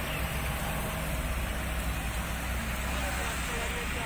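Steady traffic noise, a low rumble of idling and slow-moving cars and scooters, with indistinct voices talking in the background.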